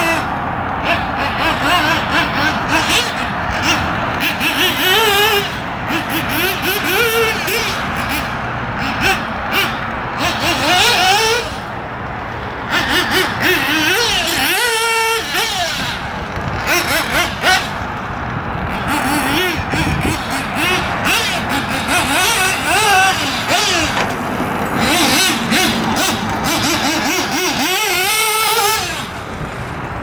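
Kyosho MP10 1/8-scale nitro buggy's small engine revving up and down over and over as the buggy is driven, its pitch rising and falling quickly, with brief easings of throttle about twelve seconds in and just before the end.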